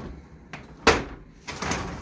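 ToughBuilt QuickSet folding work bench clacking as it is unfolded and set upright on its metal legs: one sharp, loud clack about a second in, then a short rattle.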